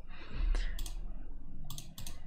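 Computer mouse buttons clicking: one sharp click about a second in and a quick pair of clicks near the end, over a faint low hum.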